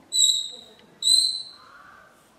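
Chalk squeaking on a blackboard as letters are written: two sharp, high-pitched squeals about a second apart, each fading within half a second.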